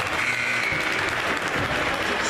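Basketball spectators applauding, a steady spread of clapping from the crowd after a shot.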